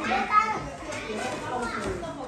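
Several women's voices talking over one another, with one louder, brief exclamation about a third of a second in.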